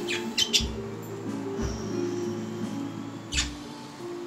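Background music with steady low notes, over which a budgerigar gives a few short calls: a couple near the start and a louder one about three and a half seconds in.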